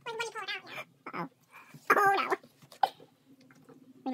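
A few short pitched vocal cries in a row, the loudest about two seconds in.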